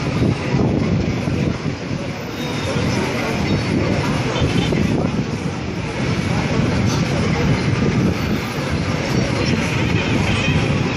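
Steady traffic noise of a busy downtown street heard from above: taxis and motorcycles running, blended with the murmur of people on the sidewalks.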